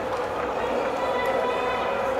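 Indistinct voices in a large indoor speed-skating hall, with no clear words and no sudden sounds.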